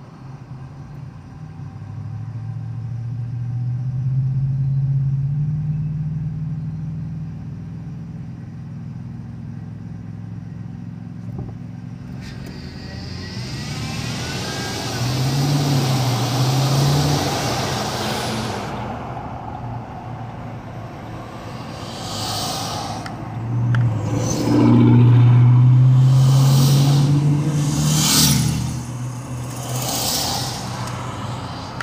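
Road traffic heard from inside a moving car: engine hum rising as the car pulls away from a traffic light, a rushing swell of passing traffic midway, and a louder engine for a few seconds near the end.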